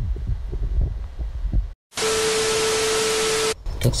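Low rumbling and small knocks of a handheld phone camera being moved. Then, after a brief dropout, comes a loud burst of static hiss with a steady low hum tone running through it. The burst lasts about a second and a half and cuts off suddenly: a TV-static transition effect laid over a cut between clips.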